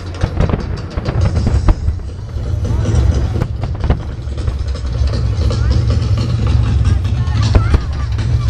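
Fireworks display: aerial shells bursting in a run of sharp bangs and crackles, over a steady low rumble, with crowd voices mixed in.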